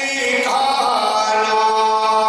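A man's voice chanting an Urdu devotional verse, settling about half a second in into one long held note.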